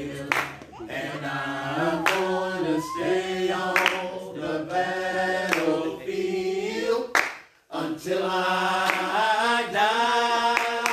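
Group of voices singing a worship song. The singing drops out briefly a little past seven seconds, then carries on.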